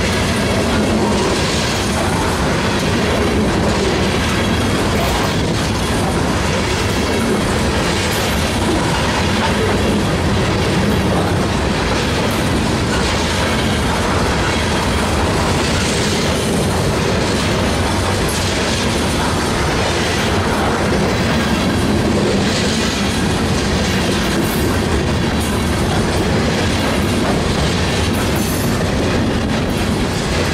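Freight train of steel ore hopper cars rolling past close by: a steady rumble and clatter of wheels on the rails, with sharper clacks every few seconds as the wheel sets cross rail joints.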